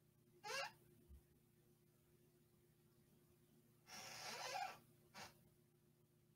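Near silence broken by a man's breathing: a short breath about half a second in, a longer exhaled sigh around four seconds in, and another brief breath just after.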